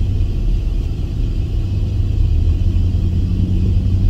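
Steady low rumble of a vehicle heard from inside its cab, with a faint steady hum joining about two-thirds of the way through.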